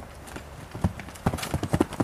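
Hoofbeats of a young chestnut mare cantering loose on a dirt arena: a quick run of dull hoof strikes that begins a little under a second in, as she comes into a jump.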